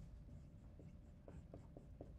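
Faint strokes of a marker writing on a whiteboard, a few short scratches in quick succession.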